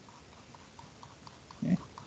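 Faint light ticks of a stylus on a tablet, several a second, as short shading strokes are drawn. A short grunted "eh" from a man comes near the end.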